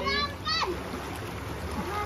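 Shallow river water flowing steadily, with splashing as feet kick and drag through the current beneath a swing. A high-pitched voice calls out briefly in the first half-second.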